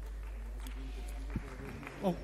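Steady low electrical hum in the sound system of a large hall, with faint voices in the background and one sharp click about one and a half seconds in.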